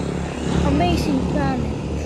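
Short, wavering voice sounds from a person, not clear words, over a steady low background hum.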